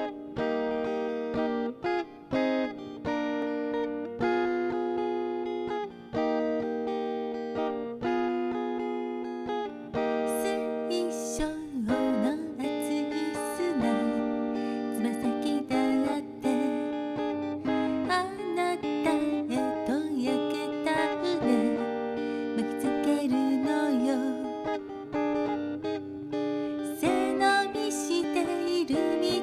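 Electric guitar playing a song intro: clean, sustained chords changing every second or two, then from about twelve seconds in a busier part with bent, wavering notes.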